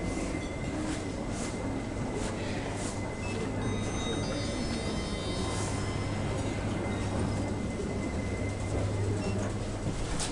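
Otis Gen2 machine-roomless elevator running: a steady low hum with a thin high whine as the car travels, and scattered light clicks.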